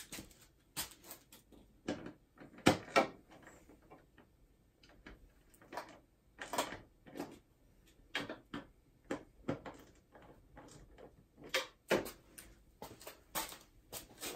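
Irregular sharp clicks and clacks of plastic and metal as the windscreen on a BMW R1200GS Adventure is worked down by hand to its lowest setting.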